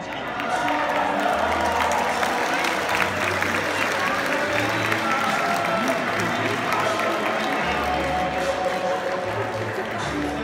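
An audience applauding, with music playing underneath.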